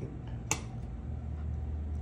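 A steady low hum with one sharp click about half a second in.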